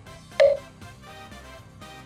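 An editing sound effect: one short, bright pitched ping about half a second in, over quiet background music.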